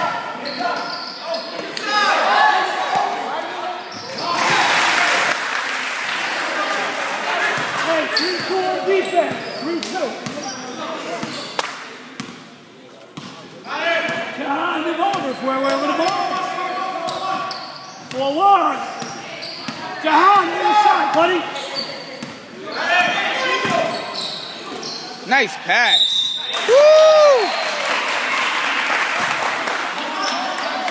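Basketball game in a gym: a ball bouncing on the hardwood court, with players and spectators calling out and talking, echoing in the hall. A few short squeaks come near the end.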